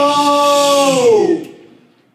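Male a cappella group holding a sung chord that slides down in pitch about a second in and fades out.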